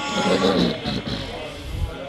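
A man's voice in melodic Quran recitation (tilawat) through a microphone and PA system, the phrase trailing off toward the end.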